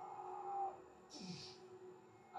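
A man vocalising fight sound effects, a drawn-out "whaa" and then a hissing "doosh" that drops in pitch about a second in, played through a TV speaker.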